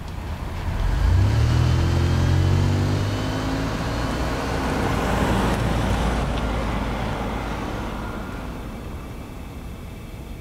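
A car engine revving up with rising pitch as the car accelerates, then the car passing close by with a rush of engine and tyre noise that fades away.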